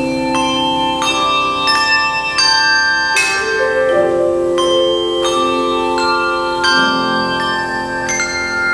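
A handbell choir playing a piece: handbells struck one after another in a melody over chords, each note ringing on and overlapping the next.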